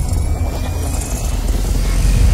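Cinematic intro sound effect: a loud, steady deep rumble with hiss over it and a faint gliding tone, part of a logo sting.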